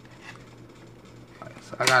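Quiet room tone with faint handling noise from fingers rubbing an iPhone's back, then a man's voice begins just before the end.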